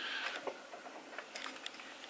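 Faint handling noises in a small room: a soft rustling swish near the start, then a few light taps and rustles.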